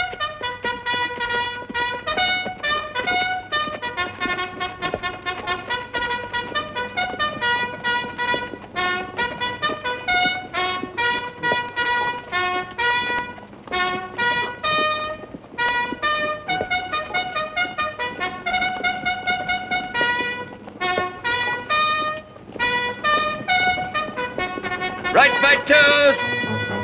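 Cavalry bugle call on a film soundtrack: a brass bugle plays a long series of short, crisp notes in quick phrases with brief pauses between them. Near the end, voices come in singing.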